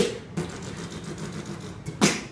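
Human beatboxing: a sharp percussive hit and a lighter one just after, then a sustained low buzzing vocal bass for over a second, ending with another hard hit.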